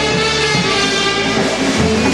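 A live polka band playing a waltz, an instrumental passage with sustained chords over a steady beat and a bass line that changes notes.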